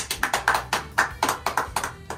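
Two people clapping their hands, a quick uneven patter of claps that tapers off near the end.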